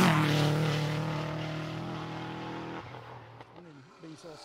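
Subaru Impreza rally car passing close at speed, its flat-four engine note running steady and fading away over about three seconds as it goes off down the stage.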